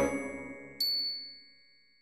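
End of an intro music sting: mallet-percussion and brass notes fading, then a single bright bell-like ding about a second in that rings and dies away.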